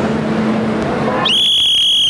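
Metro platform ambience with a low hum, then, about a second and a half in, a loud, shrill, steady whistle tone starts abruptly and holds for under a second, drowning out everything else.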